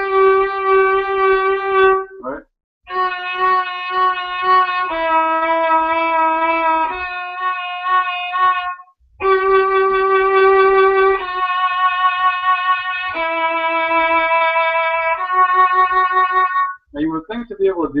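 Violin played slowly with vibrato: a series of bowed notes, each held about two seconds before moving to the next pitch, with two short breaks. These are slow vibrato exercises, played slowly so that the final wave of each vibrato comes out complete rather than strained.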